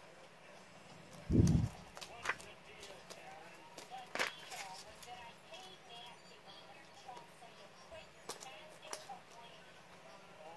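Plastic Blu-ray case and its paper insert being handled on carpet: a dull thump about a second in, then a few sharp plastic clicks spread across the rest. A faint murmur of voices runs underneath.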